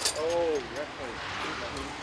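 A person's short wordless voice sound, rising then falling in pitch, about a second in length, followed by low outdoor background noise.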